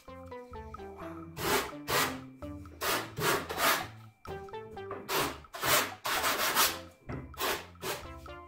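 Hand tool worked back and forth on a thin wooden strip: about eight short scraping strokes in small groups, over background music.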